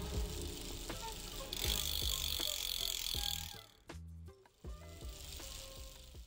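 Short outro music sting with percussive hits. From about a second and a half in, a bicycle freewheel hub ratchets in a rapid, buzzing tick for about two seconds. The sting then drops to a quieter tail.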